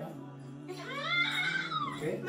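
A young child's high-pitched whining call, rising and then falling, lasting about a second from just before the middle of the stretch. Steady background music plays under it.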